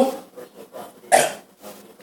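A pause in a man's speech, broken by one short vocal sound from him about a second in.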